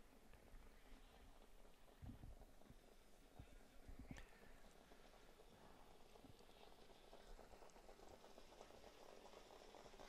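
Near silence: faint track ambience, with a couple of soft low thumps about two and four seconds in.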